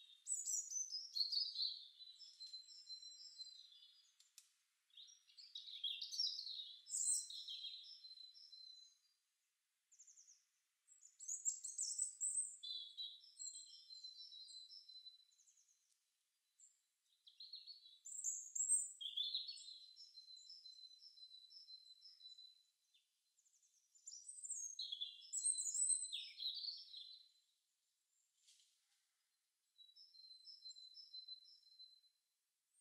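Songbird singing outdoors: high-pitched phrases of chirps and whistled notes, each a few seconds long, repeating about every five to six seconds with short pauses between.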